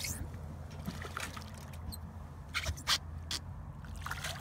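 Hooked striped bass splashing at the surface beside the boat as it is landed, with a few sharp splashes about two and a half to three seconds in. A steady low hum runs underneath.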